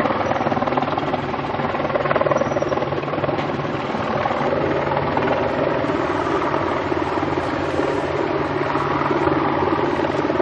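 Heavy diesel engines running in a steady, unbroken drone: a tank driving slowly across a floating bridge of amphibious bridging vehicles, whose own engines keep running to hold the bridge in place.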